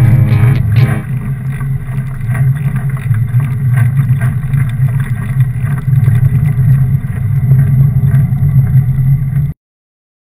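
Guitar music fades out about a second in, leaving a steady low rumble of wind and riding noise on a bike-mounted camera's microphone as a fat bike rolls through snow. The rumble cuts off suddenly near the end.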